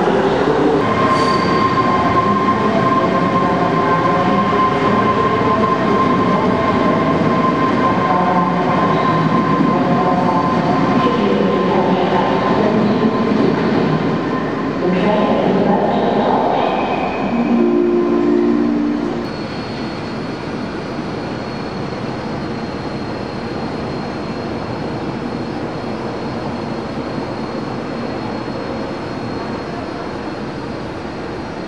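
Electric train sounds in a large station: a steady high whine with shifting motor tones as a train moves. About eighteen seconds in there is a short chord-like horn blast, after which a quieter, steadier hum with a thin high whine goes on.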